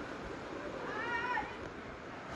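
A cat meowing once, about a second in: a short call that rises and then falls in pitch.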